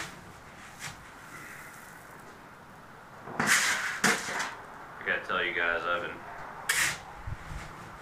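Shovel digging into a pile of anthracite rice coal and tipping it into a bucket: a few short, sharp scrapes, the loudest about three and a half seconds in and again near seven seconds.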